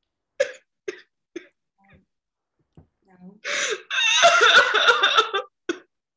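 A woman sobbing: a few short catching breaths, then a long, wavering crying wail about three and a half seconds in.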